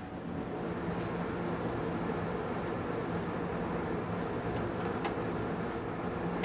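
Steady mechanical hum with a few fixed low tones, like a ventilation or air-conditioning fan, with a couple of faint clicks.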